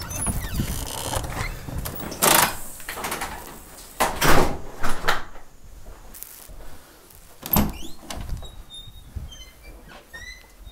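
A glass-paned entrance door being opened and shut: clicks and clatter from its handle and latch, and several sharp knocks and thumps, the loudest about two and four seconds in.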